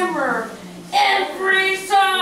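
A woman's voice in a sing-song, chant-like delivery with gliding pitch, pausing briefly about half a second in before going on.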